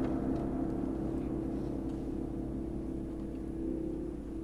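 Orchestral music dying away: the long resonance of a tam-tam stroke over low held notes, fading slowly with no new attacks.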